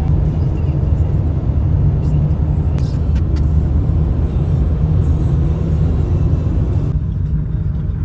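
Steady low road and engine rumble heard inside the cabin of a small car driving along the road.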